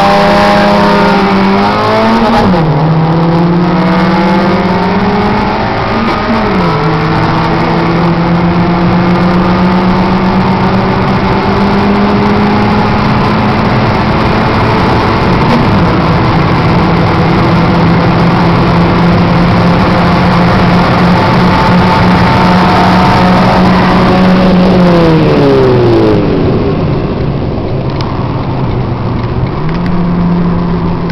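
Car engine heard from inside the cabin under hard running at speed, with heavy road and wind noise. It holds high, fairly steady revs, and the pitch drops sharply three times at gear changes. About 24 seconds in the revs fall away as it lifts off, then climb again near the end.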